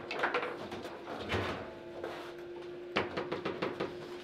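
Table football play: a hard plastic ball clacking against the figures and the table walls, with rod knocks. A quick run of clacks comes about three seconds in, over a faint steady hum.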